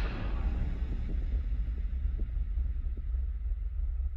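A deep, rumbling sound-design drone under title cards, with a hiss above it that fades away over the first second.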